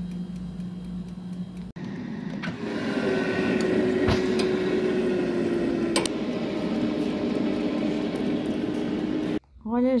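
Mondial air fryer running: a steady fan hum, then a louder, airier fan noise with a faint steady whine. A few sharp clicks come as a metal utensil knocks against the basket while the roasting pork loin pieces are turned.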